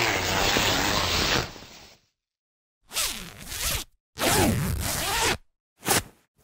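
Zippers being pulled in four separate zips with short silences between: a long zip of about two seconds, a shorter one of about a second, another of about a second and a half, and a quick one near the end.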